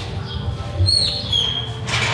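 A small bird chirping in a large room: a few short, high chirps about a second in, over a steady low hum.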